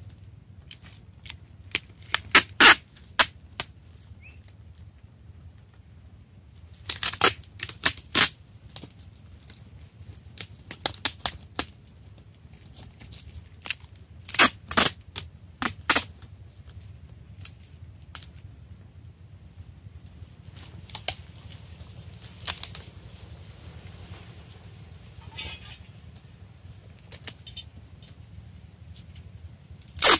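Clear packing tape being pulled off its roll in short ripping spells, about five of them, as it is wound around a plastic-wrapped root ball.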